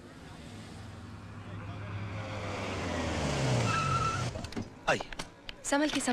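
A car drives up, its engine and tyre noise growing louder, then slows with a falling engine note and stops with a brief squeal about four seconds in. A few sharp knocks follow near the end.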